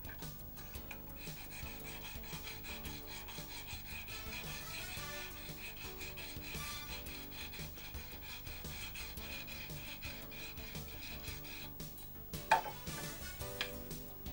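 Sandpaper rubbed back and forth along a fishing rod blank, roughening its surface so the glue for a cork grip will bond, over background music. A brief louder sound comes near the end.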